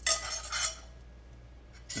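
Metal spoon clinking and scraping in a stainless-steel frying pan as fried bread-crust croutons are scooped out. There is a short clatter with a brief metallic ring in the first half second or so, then only light scraping.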